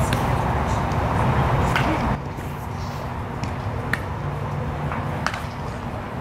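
Ballfield ambience: a steady low hum with a faint murmur of voices, and a few sharp knocks. The sound drops quieter about two seconds in.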